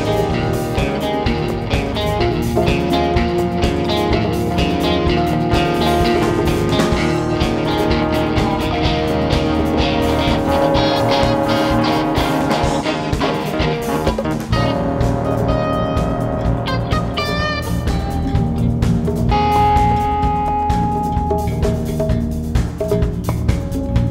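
A live rock band plays an instrumental passage with electric guitar, keyboards, bass and drum kit, heard as a direct soundboard mix. The music shifts in texture about two-thirds of the way through.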